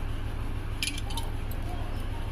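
Large steel tailoring shears snipping through cotton lamp wicks: a couple of short, sharp snips about a second in, over a steady low hum.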